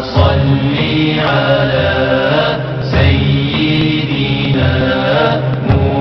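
A voice chanting the Arabic durood (salawat) on the Prophet Muhammad, drawing the words out in long, held melodic notes that change pitch several times.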